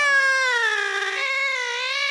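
A cat's long, drawn-out meow, its pitch sinking and then rising again.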